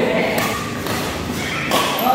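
Thuds and sharp knocks of a badminton game on an indoor court, from players' footsteps and racket play, a few separate knocks with voices in a large hall.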